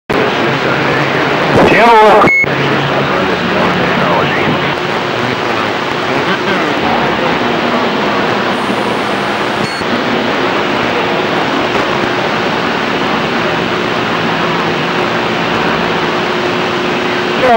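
CB radio on receive: a steady rush of hiss and static with weak, garbled voices of distant stations breaking through, loudest about two seconds in. A low steady whistle sits under the noise in the later seconds.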